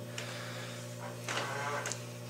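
Steady low electrical hum from appliances running in a small office room, a heater and a fridge.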